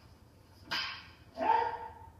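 Two short, sharp kiai shouts from jodo practitioners, less than a second apart, the second one longer and pitched, as the sword and staff exchange a strike in the kata. Heard played back through a television set.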